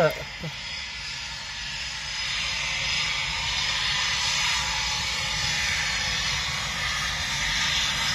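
Distant Eurofighter Typhoon taxiing, its twin EJ200 turbofan jet engines making a steady high rushing noise that grows a little louder about two seconds in.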